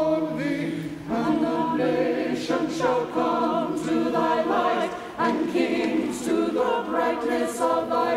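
A church choir singing, the voices holding and changing notes continuously.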